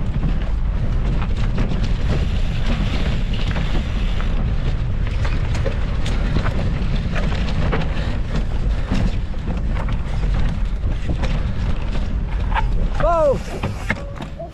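Wind buffeting a camera microphone on a moving mountain bike, over the rumble of knobby tyres rolling on rocky ground and the rattle and knocks of the bike over rough rock. A short cry from a rider about a second before the end.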